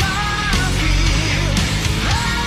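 A heavy rock song with distorted electric guitars and drums, and a held melody line over them.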